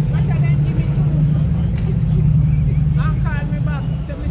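Busy street traffic with a steady low engine drone, with voices talking over it, most clearly at the start and again near the end.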